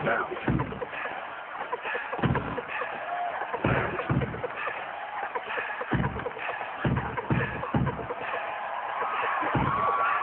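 Dance-scene soundtrack with heavy bass hits at uneven intervals, about nine in all, over a steady hiss of rain and crowd noise.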